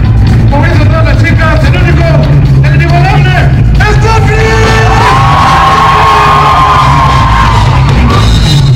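Live surf rock band playing loudly over a heavy bass, with shouting voices in the first half and a long held high note in the second half.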